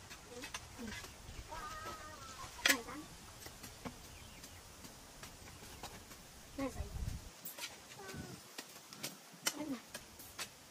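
Faint, wavering vocal sounds from a young child, with a few sharp knocks of a hoe striking the ground, the loudest about a third of the way in and several more near the end.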